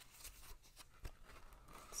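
Faint rustling and a few light clicks of a vinyl LP's cardboard jacket being handled.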